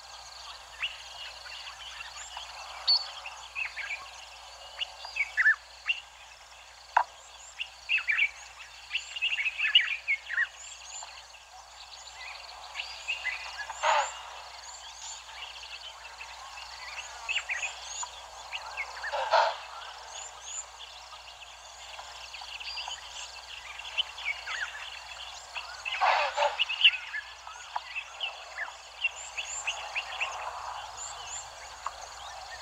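Many wild birds chirping and calling, short and sliding calls overlapping all through, over a steady outdoor hiss. A few louder calls stand out near the middle and again toward the end.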